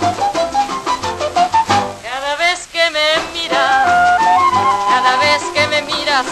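A shellac 78 rpm record playing a Latin band arrangement in an instrumental break. A solo trumpet plays fast runs of notes, with a quick series of upward sweeps about two seconds in.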